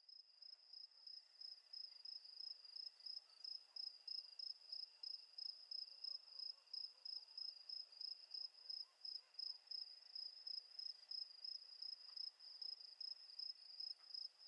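A cricket chirping at night: one faint, high-pitched chirp repeated evenly about three times a second.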